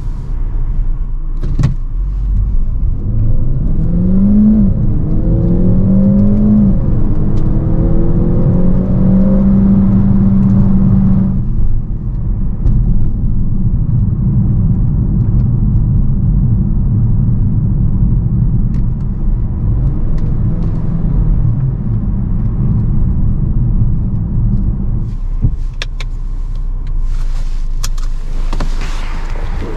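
Cabin sound of a Peugeot 508 PSE plug-in hybrid. Its turbocharged 1.6-litre four-cylinder petrol engine pulls away with the revs rising through two upshifts, holds a steady note, then cuts out abruptly about eleven seconds in as the car switches to electric mode. After that only road and tyre rumble is left.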